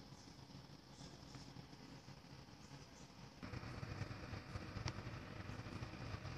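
Faint, steady hum of a kitchen appliance fan. About three and a half seconds in it steps up louder and fuller, and there is one small click near five seconds.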